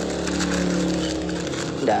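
A motor vehicle engine running steadily, a flat even hum that fades away near the end.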